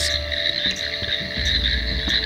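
Tree frogs calling in a chorus, a steady high-pitched trill, over a low background drone.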